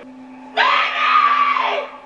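A woman screaming in terror: one long, loud, high scream that starts about half a second in and falls away near the end, over a low steady drone from the film's soundtrack.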